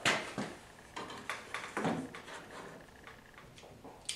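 Scattered light clicks and knocks of a tool and a piece of base shoe being handled on a coping fixture, setting up for the cut. The knocks are sharpest right at the start and grow fainter.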